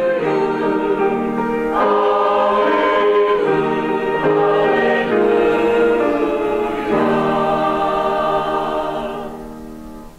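Mixed church choir singing the close of an anthem, ending on a long held chord that fades out near the end.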